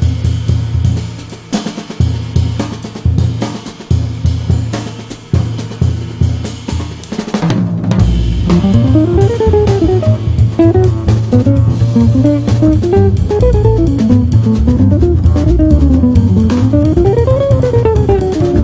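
Jazz trio of guitar, drum kit and bass playing. The first half is mostly drums and bass in broken, stop-start phrases. About eight seconds in the band comes in fuller and louder, and a guitar line winds up and down over it.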